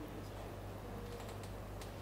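Faint computer keyboard typing: scattered light, irregular key clicks over a steady low hum.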